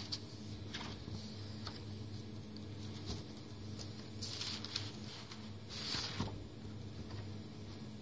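Paper pages of a label sample book being turned by hand, with short rustles, the loudest about four and six seconds in, over a steady low hum.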